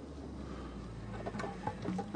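Estate car driving away on a dirt track: a low steady engine hum with scattered small crunches and ticks of tyres on grit and stones, thickening about halfway through.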